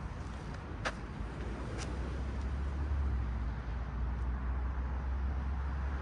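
Steady low outdoor rumble, a little louder after a couple of seconds, with two faint clicks about one and two seconds in.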